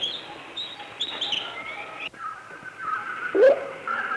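Birds calling on an old film soundtrack: quick high chirps for the first two seconds, then a sudden cut to a different bird's repeated warbling call with a lower swooping note near the end.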